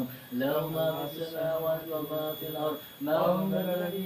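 Men's voices chanting Arabic dhikr in long, drawn-out phrases, with a fresh phrase starting just after the start and another about three seconds in.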